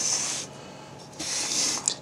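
Two breaths close to the microphone, each about half a second long, about a second apart.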